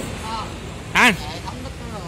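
A man's short spoken interjections, one faint and one louder rising-then-falling "à" about a second in, over a steady low background hum.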